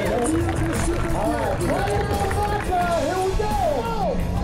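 A voice with long, drawn-out notes that rise and fall, over crowd noise and music.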